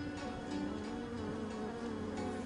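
Swarm of honeybees buzzing: a steady, slightly wavering hum of many wings, over soft background music.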